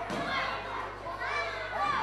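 Several young voices shouting and calling out at once, overlapping: spectators and corners shouting at a youth boxing bout.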